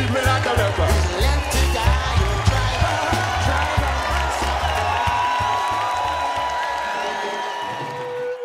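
Live reggae band music with a heavy bass beat, mixed with crowd cheering and voices singing along. The music fades out over the last couple of seconds.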